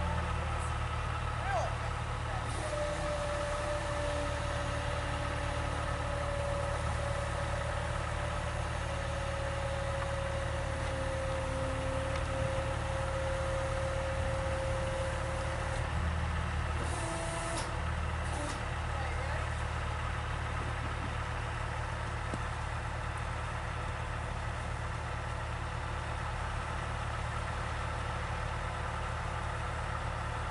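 A truck's engine idling steadily beside the car-hauler trailer. For about thirteen seconds a thin, slightly falling whine runs over it as the trailer's hydraulic liftgate raises the car to the upper deck.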